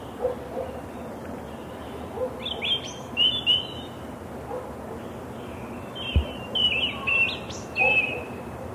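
European robin singing: high, thin warbling phrases, one group starting about two and a half seconds in and another from about six and a half seconds, over a steady background hiss. A brief low thump sounds just after six seconds in.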